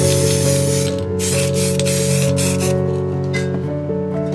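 Aerosol spray paint can hissing in a burst of about a second, then in shorter, fainter bursts, as paint is sprayed along a straight-edge mask. Background music with steady sustained notes plays throughout.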